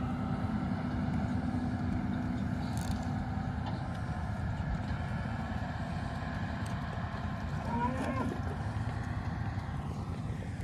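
An engine running steadily at a low pitch, with a cow mooing once about eight seconds in.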